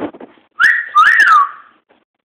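A person whistling: a short held note, then a second note that swoops up and falls back down, about a second in all.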